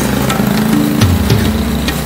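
A vehicle engine running, mixed with background music that has a steady beat.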